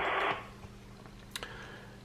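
Quiet room tone with a faint steady low hum and one small click just over a second in.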